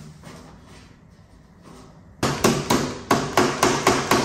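Mallet knocking flat-pack furniture parts together, a quick run of sharp strikes, about five a second, starting about two seconds in, seating a joint that is still loose.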